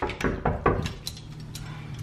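A few sharp clicks and rattles of a rim door lock's knob and bolt being turned by hand to unlock the door, most of them in the first second.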